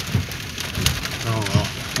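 Rain falling on a car's roof and glass, heard from inside the cabin as a steady hiss of many small drop ticks. A brief bit of a man's voice comes in about a second and a half in.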